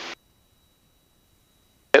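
Near silence: a voice trails off at the very start, then dead quiet with no engine or cabin noise, and speech resumes right at the end.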